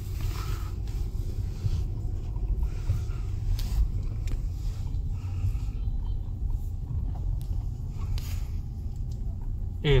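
Low, steady rumble of a car driving, heard from inside its cabin as it pulls out onto the road. The car runs smoothly and quietly ("êm").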